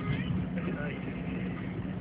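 Steady low hum of a car's engine and cabin noise, heard from inside the car.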